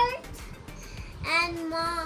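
Young child's voice drawing out words in a sing-song way, with one long held note about a second and a half in.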